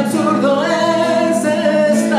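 A man singing drawn-out, wordless notes of a ballad, accompanied by his own acoustic guitar.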